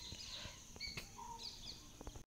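Faint background bird chirps, a few short high calls scattered over a low hiss, with a couple of faint clicks.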